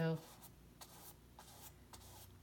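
A paintbrush scrubbing paint onto a canvas: a few faint, short scratchy strokes of the bristles.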